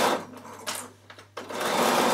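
Bernina sewing machine stitching a seam. It stops just after the start, with a brief short run in the lull, and starts up again about halfway through, running steadily to the end.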